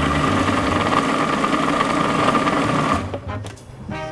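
Food processor motor running steadily as it blitzes ground pecans, sugar and egg white into a crust mixture, then cutting off abruptly about three seconds in.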